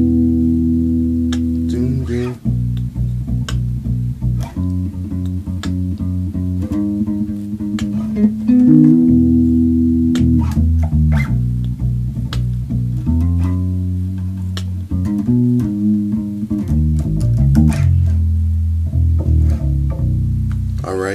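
Unaccompanied electric bass guitar playing a chordal lick in B: several notes ring together as held chords for a second or two at a time, broken by quicker runs of plucked single notes and slides.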